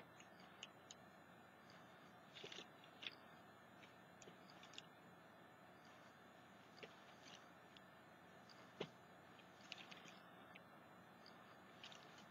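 Near silence with faint, scattered taps and clicks as wood-mounted rubber stamps are handled and pressed onto a paper card.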